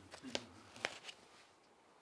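Two faint, sharp clicks about half a second apart in a quiet room, with light handling noise.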